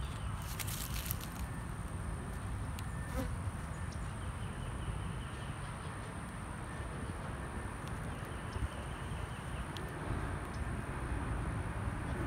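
Quiet outdoor ambience with a steady low wind rumble on the microphone, and a few faint clicks in the first second and again around three seconds in from handling a paint marker pen.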